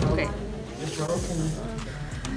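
A short spoken "okay", then quieter voices of students talking in the room, with a brief hiss about a second in.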